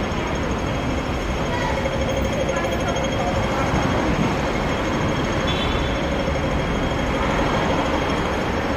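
Steady city street noise of road traffic beneath an elevated roadway, with faint voices of passers-by.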